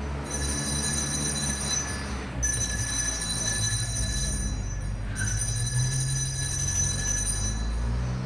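Altar bells rung in three spells of about two seconds each, a bright many-toned ringing. They mark the elevation of the consecrated host at Mass.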